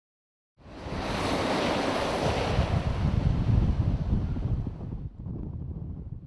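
Wind buffeting the microphone: a gusty rushing noise with a heavy, fluttering rumble. It starts suddenly just after the beginning and eases off about five seconds in.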